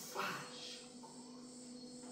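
A pause in a man's spoken stage monologue: a short vocal sound just after the start, then quiet room tone with a steady low hum.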